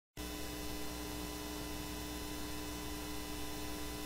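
Steady electrical mains hum with a faint hiss, several unchanging tones held together.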